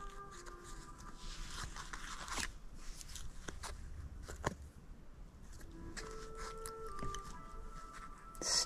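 Quiet background music with soft held notes, under light clicks and rustling from hands handling a bead-embroidered piece on its stiff backing, with a couple of sharper clicks about two and a half and four and a half seconds in.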